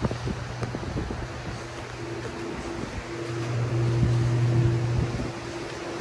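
A steady, low mechanical hum with a fainter higher tone above it, swelling louder in the second half over a background of outdoor noise.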